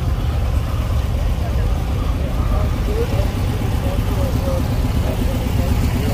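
A car engine idling with a steady low rumble, under the faint talk of people in the background.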